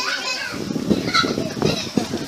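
Voices close by, children among them, talking and calling out.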